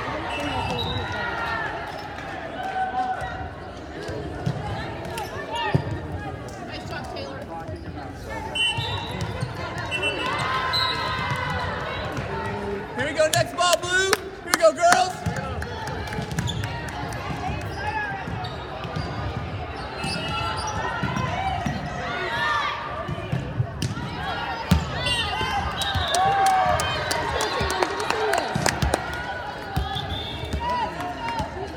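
Volleyball hits and bounces on a hardwood gym floor amid the voices of players and spectators, echoing in a large gym, with a cluster of loud hits about halfway through.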